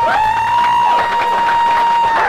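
A person in the audience giving a long, high whoop of cheering, held on one pitch.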